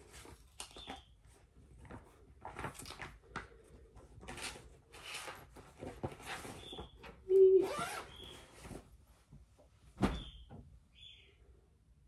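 A pet bird chirping and squawking several times, loudest with a rising squawk about seven seconds in. Under it are rustling and handling noises, with a sharp knock about ten seconds in.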